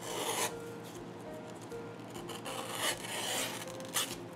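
9 oz veg-tan tooling leather being drawn through a wooden Craftool strap cutter, the blade slicing a strip with short rasping scrapes: one near the start, then several more from about two seconds in.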